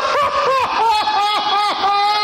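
High-pitched laughter: a quick run of short squealing rises and falls, about four a second, ending in one longer held squeal.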